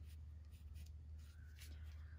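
Faint scratching of a pencil on drawing paper, a few short strokes as a small pear stem is sketched, over a low steady hum.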